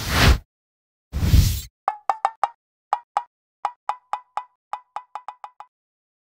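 Two short whooshes, then a run of about eighteen short pitched plops coming faster toward the end, like a cartoon footstep sound effect.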